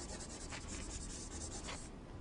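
Faint scratchy rubbing of writing on a lecture board in quick strokes, stopping just before the end.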